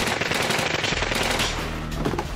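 Rapid burst of automatic gunfire, sharp repeated shots lasting about a second and a half, then stopping, with music underneath.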